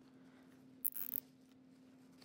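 Plastic zip tie being pulled tight, its teeth ratcheting through the lock in one brief zip about a second in.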